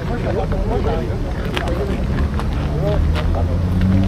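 Voices of several people talking among the parked cars, over the low hum of a car engine running nearby that rises slightly in pitch near the end.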